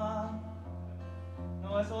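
A man singing solo with his own acoustic guitar accompaniment: a held, wavering sung note fades in the first half-second, the guitar carries on alone, and he starts a new phrase in Spanish near the end.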